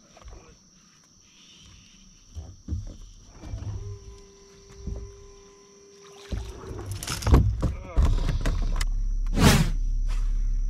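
Splashing and rod and reel handling as a hooked bass is fought near the boat, with a steady hum partway through. About eight seconds in it switches abruptly to a steady rumble of wind on the camera microphone, with one loud whoosh near the end.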